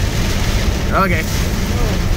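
Steady, loud rumble inside a car driving through heavy rain: engine and road noise mixed with rain hitting the windshield and body.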